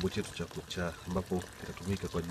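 A voice talking over liquid being poured or trickling.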